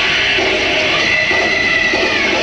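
Heavy metal band playing live, heard on a loud, distorted audience recording: dense distorted electric guitars and drums, with a high held squeal in the second half that bends slightly down.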